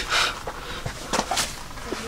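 A person laughing briefly, then a few short sharp sounds about a second in.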